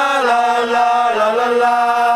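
Voices singing a Thai cheer song in long, held notes that step to a new pitch a few times.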